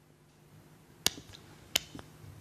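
Two sharp clicks about two-thirds of a second apart, the first about a second in, over quiet room tone.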